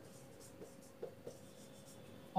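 Marker pen writing on a whiteboard, faint, with a few short strokes about halfway through.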